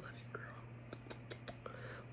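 A woman's soft whisper and breathy mouth sounds with scattered small lip clicks, over a low steady hum.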